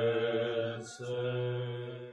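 Male bass voices of a choir section singing held notes together in a rehearsal, with a short break about a second in before the next note. The singing tapers off near the end.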